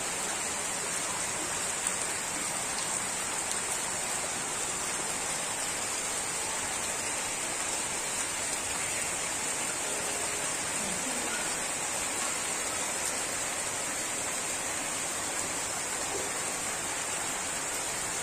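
Heavy rain falling steadily, an even, unbroken hiss.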